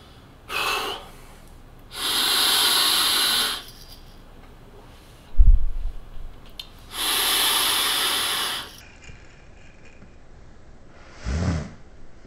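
A person taking a big vape hit and breathing hard: a short breath, then two long, loud hissing breaths of about a second and a half each as large clouds of vapor are drawn and blown out. A low thump comes about halfway through, and a short throaty sound comes near the end.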